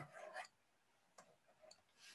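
Near silence: room tone, with two faint short ticks a little over a second in and about half a second later.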